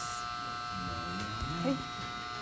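A steady electrical buzz made of several high, even tones, switching on abruptly at the start and holding a constant level. A soft "okay" is spoken near the end.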